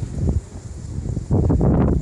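Wind buffeting a phone's microphone: an uneven low rumble that turns loud about a second and a half in. The wind noise is quite loud.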